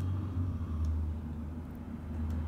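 Steady low background hum with a faint hiss.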